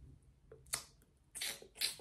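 A few brief, soft rustles of hair being lifted and tossed by hand, after a near-silent first second.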